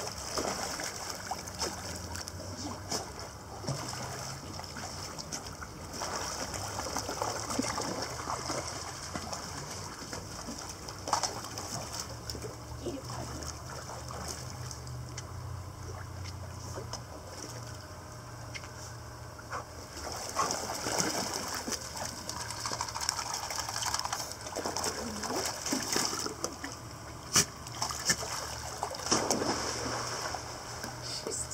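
Shallow pool water splashing and sloshing as a small Scottish terrier wades and plays with a ball, with short sharper splashes now and then, busier near the end.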